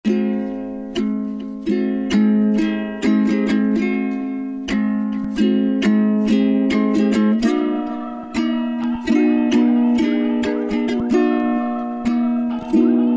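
Solo ukulele instrumental intro: chords strummed about once or twice a second, each ringing and fading before the next, with a change of chord about halfway through.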